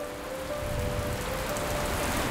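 Steady rain falling on the sea surface, an even hiss with no separate drops standing out.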